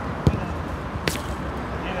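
A football being kicked twice in play: a sharp thud about a quarter second in, then a sharper, higher smack about a second later.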